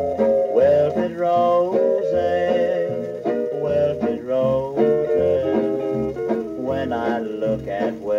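A 1953 country record playing on a vintage record player: a string band's instrumental break between verses, with guitar to the fore and sliding notes in the lead line.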